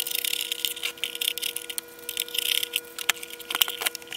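Scraping, rubbing and a few sharp clicks of a plastic oscilloscope case being gripped and pulled at by hand. The case does not come free: it is still held by two hidden screws.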